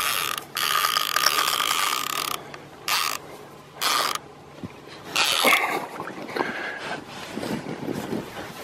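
Fishing reel under load from a hooked Russian sturgeon, giving a rattling mechanical whirr in bursts. A long run of about two seconds comes at the start, followed by several short bursts.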